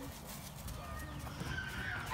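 Light footsteps of two children walking on wood-chip mulch, faint against a low outdoor background rumble.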